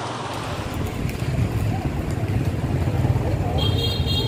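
Busy street traffic: motorbike engines running close by with a steady low rumble and faint voices in the background, and a short high beep just before the end.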